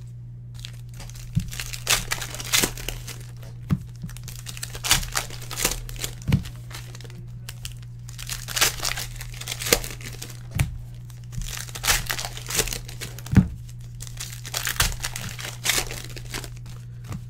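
Foil trading-card pack wrappers crinkling and tearing as packs are ripped open by hand, in many short, sharp crackles. A steady low hum runs underneath.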